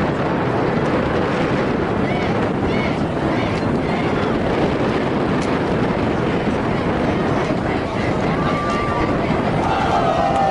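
Steady crowd noise from spectators: many voices mixing into a dense murmur, with wind noise on the microphone.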